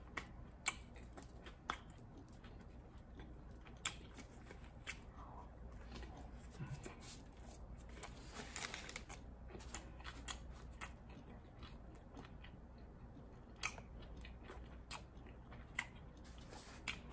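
A person chewing a mouthful of sandwich: faint, scattered mouth clicks and soft crunches.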